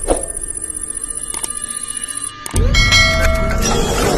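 Electronic intro jingle and sound effects: a short swish at the start over a steady high ringing tone, then a sudden heavy low hit about two and a half seconds in, followed by bright chiming tones.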